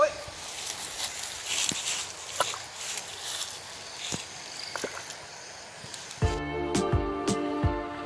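Quiet outdoor ambience with a high hiss and a few faint clicks, then background music with struck notes cuts in abruptly about six seconds in.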